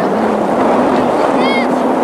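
Distant shouting voices across a soccer field, with one high call about one and a half seconds in, over a loud steady rushing noise.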